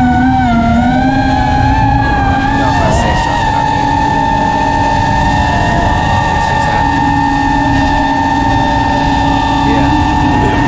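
FPV quadcopter's brushless motors whining as it hovers, the pitch climbing a little over the first few seconds and then holding steady.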